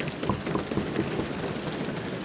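Lok Sabha members applauding by thumping their desks: a dense, steady patter of many overlapping knocks.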